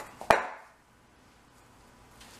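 A single sharp knock of the glass mixing bowl against the granite countertop, about a third of a second in, with a short ring after it, as sticky dough is worked in it by hand.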